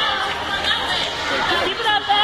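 Many people's voices chattering at once in an indoor gym, overlapping with no single voice standing out.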